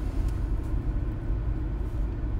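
Steady low rumble of a car heard from inside its cabin.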